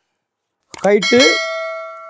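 Notification-bell sound effect of a subscribe-button animation: a short voice-like burst about a second in, then a bell ding that rings on and slowly fades.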